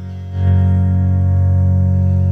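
Tone Revival Sonic Wonder electric guitar strummed: a chord that comes in strongly about half a second in and is left to ring out steadily.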